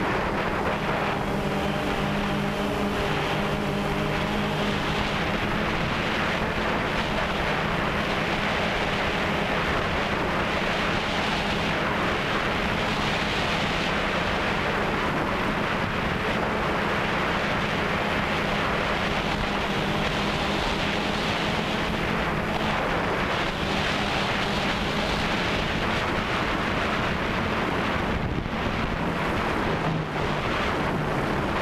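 DJI Phantom 2 quadcopter's motors and propellers humming steadily in flight, heard from the camera on board, with wind rushing over the microphone. The hum holds a low steady pitch, with higher tones above it in the first several seconds.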